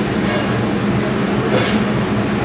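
Steady, loud mechanical drone with a constant low hum, with faint brief hissy swishes about half a second and a second and a half in.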